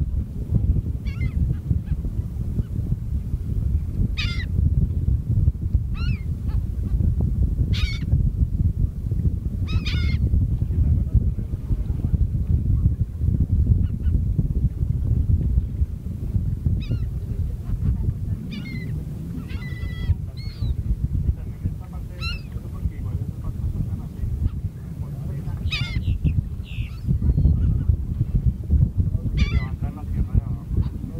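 Gulls calling: about a dozen short cries scattered throughout, over a steady low rumble.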